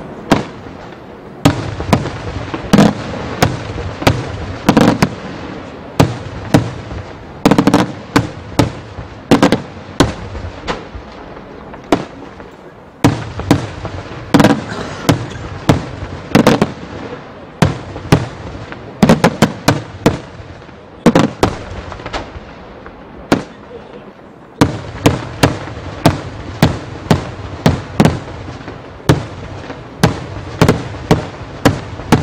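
Daytime fireworks: loud, sharp bangs from bursting aerial shells, going off in rapid irregular clusters of several a second. There are short lulls about twelve seconds and about twenty-four seconds in.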